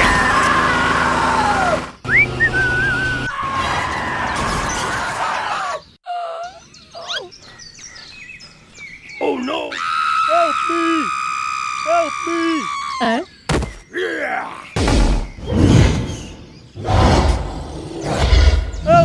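A laugh at the start, then a string of cartoon sound effects and short bits of music, each changing every few seconds.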